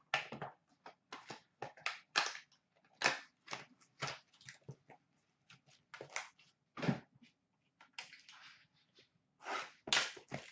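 Trading cards and their cardboard packaging being handled and set down on a glass counter: irregular light clicks and taps, with a longer rustle about eight seconds in.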